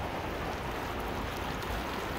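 Steady wash of water and wind around a small sailboat under sail: an even hiss with no distinct events.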